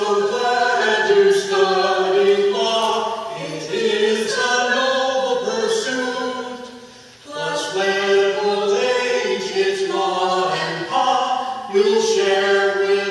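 A man singing a slow melody in held notes that step from one pitch to the next, with a short break between phrases about seven seconds in.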